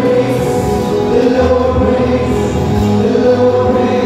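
Christian worship song: several voices singing together over instrumental backing.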